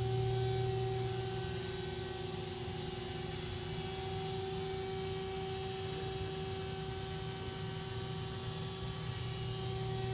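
Steady electrical mains hum with a couple of higher steady tones above it and a faint hiss, unchanging throughout; no blade or bowl motor is running.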